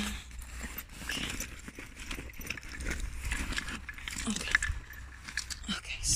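Rustling and scattered light clicks of close handling as a knife is got out, over a low, steady rumble.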